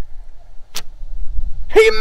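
Toy archery bow shooting a foam-tipped arrow: a single short, sharp snap of the bowstring being released.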